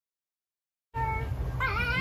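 Silent for about the first second, then a fox's short, high-pitched whining cries, several in quick succession, over a steady low rumble.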